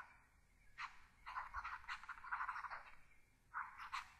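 Faint scratching of a stylus handwriting on a writing tablet, in short runs of strokes with the longest in the middle.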